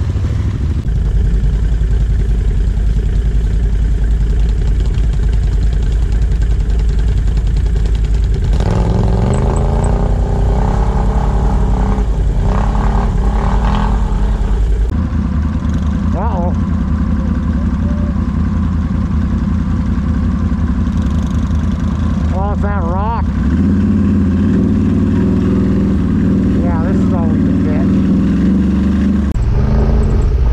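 ATV engines running, with engine speed rising and falling in steps partway through.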